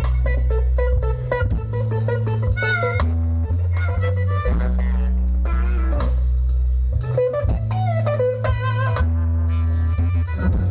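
Live blues band playing an instrumental passage: electric guitar and a lead line with bending notes over a bass guitar line and drum kit.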